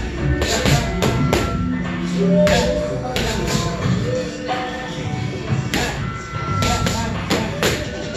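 Boxing gloves striking focus mitts: sharp slaps at an irregular pace, some in quick pairs, over background music.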